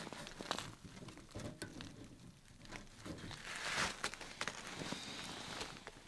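Faint, scattered crackles and light clicks from a small wood stove as thin sticks of kindling are laid into its firebox and catch.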